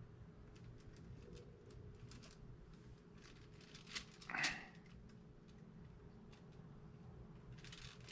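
Faint handling sounds from hands fitting a clay guitar onto a clay figure: small scattered clicks and taps over a low steady room hum, with one brief louder noise about four seconds in.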